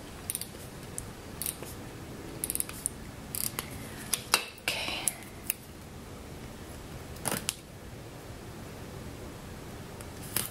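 Hands handling paper planner stickers and their backing: scattered light crinkles, peels and ticks as a sticker strip is pulled free and pressed onto a planner page, busiest around four to five seconds in and again about seven seconds in.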